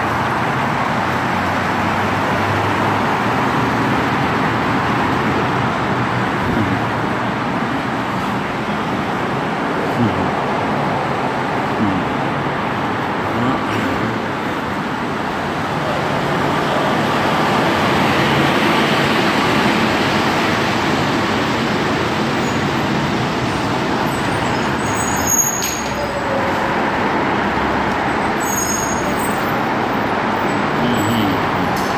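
Steady road traffic: cars and trucks passing on a wet multi-lane road, with tyre hiss and engines. It swells to a louder passing rush midway through, with a few faint knocks.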